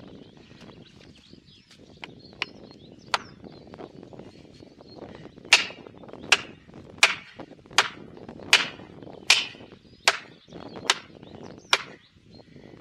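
Hammer blows driving plastic felling wedges into the cut of a large tree to tip it: two lighter taps, then nine hard, evenly paced strikes, about one every three-quarters of a second.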